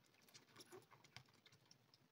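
Faint, quick, irregular wet clicks and smacks of a kitten suckling milk from a feeding bottle's teat, thinning out near the end.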